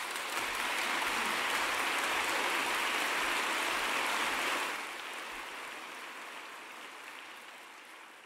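Audience applauding, strong for the first four and a half seconds or so, then fading gradually.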